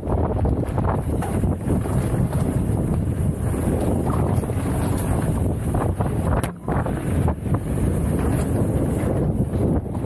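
Mountain bike riding fast over a rough dirt trail: steady tyre rumble and frame rattle with many small knocks, under heavy wind buffeting the microphone. The noise drops out briefly about six and a half seconds in.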